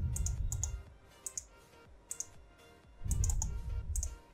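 Computer mouse clicks, many in quick press-and-release pairs, as menus are opened and items chosen, over faint background music. Two low rumbles, one at the start and one about three seconds in, are the loudest sounds.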